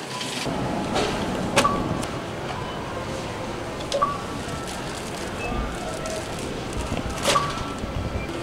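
Background music over steady store background noise, with three short sharp clicks spaced about two and a half seconds apart.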